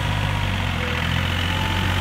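John Deere 850 compact tractor's three-cylinder diesel engine running steadily.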